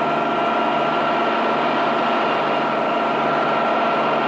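Old Peterbilt truck's engine idling, a steady drone that holds one pitch without revving.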